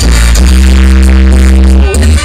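Live band music, loud over the stage sound system, with a heavy bass. About half a second in the band holds one steady chord, which breaks off just before the end.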